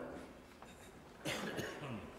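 The last of a pipe organ chord dies away, then a person coughs about a second in, with a smaller throat sound near the end, over a quiet room.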